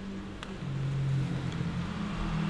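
Quiet room tone: a low hum with a single faint click about half a second in.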